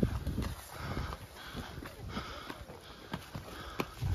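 Footsteps scuffing and crunching up a stony dirt slope, with scattered irregular clicks, the sharpest near the end, and the rustle of a nylon jacket rubbing close to the microphone.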